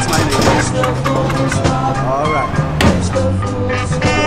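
Ska-style soundtrack music with a steady bass line and beat, with a voice over it.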